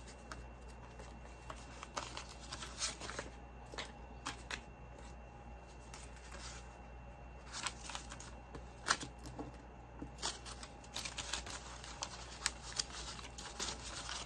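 Paper banknotes being counted by hand: dollar bills flicked and shuffled one by one with crisp rustles and snaps, coming faster in the last few seconds, over a faint low hum.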